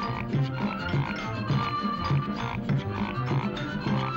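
Swing-era dance band music on an early sound cartoon soundtrack, with a low bass line pulsing about two to three times a second under a steady beat.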